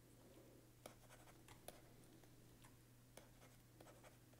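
Near silence: a faint steady low hum with four soft clicks from a computer mouse scattered through it.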